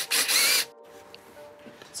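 Cordless power tool spinning a 10 mm socket in one short burst of about half a second, running a bolt at the throttle-cable bracket on the intake manifold.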